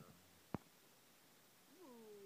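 A cat meowing softly: one drawn-out call begins near the end, rising briefly and then falling slowly in pitch. A single sharp click comes about half a second in.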